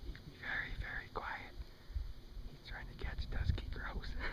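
A person whispering in two short spells, with a low rumble underneath.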